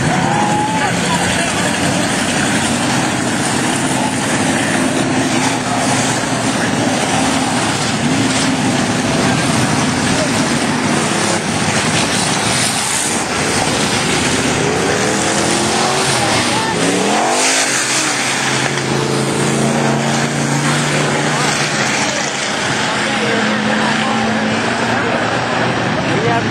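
A pack of stock cars racing, several engines running loud at once. Engine pitch rises and falls as cars go past, most clearly a little past halfway through.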